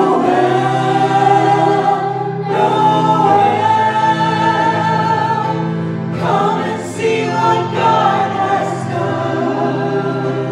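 A small mixed group of men and women singing together in harmony through microphones, holding long notes.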